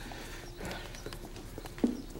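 Footsteps on a hard floor: a run of irregular soft knocks, with one sharper, louder knock near the end.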